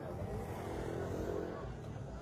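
A motorbike engine passing by, its hum swelling to its loudest a little after a second in and then fading, over the chatter of a street crowd.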